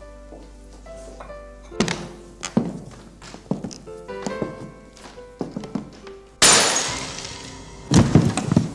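A glass dish dropped off-screen, shattering with a sudden loud crash about six and a half seconds in that dies away over a second or so. Before it there are a few light clatters of plates on a kitchen counter over soft background music.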